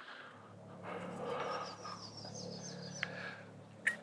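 A man's quiet, breathy laughter with no words, with a faint high bird call repeating in the background through the middle.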